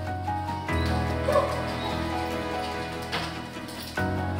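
Background music, with a dog giving a single short bark about a second in.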